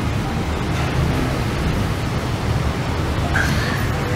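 Steady background noise with a low rumble and an even hiss, with no distinct events.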